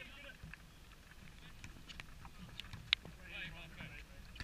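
Football players shouting across an outdoor pitch, with a few sharp knocks, the loudest about three seconds in, over a low rumble of wind on the microphone.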